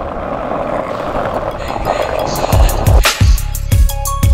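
Skateboard wheels rolling over concrete, a steady rumble. About two and a half seconds in, music with a heavy kick-drum beat starts over it.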